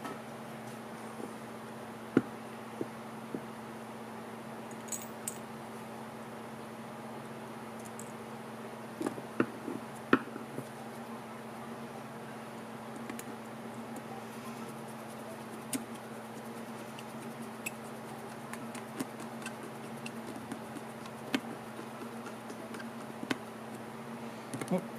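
Scattered light clicks and taps as small metal carburetor parts and the aluminium carburetor body are handled and set down on a shop towel, the clearest about two seconds in and around nine to ten seconds in, over a steady low hum.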